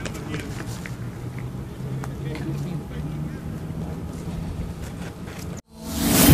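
Outdoor sound of a football training session: players' distant shouts over a low steady rumble, with a few sharp kicks of the ball. The sound cuts off abruptly shortly before the end.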